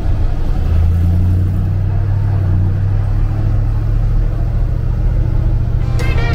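The diesel engine of a MAN KAT truck running while under way, a steady low drone heard from inside the cab.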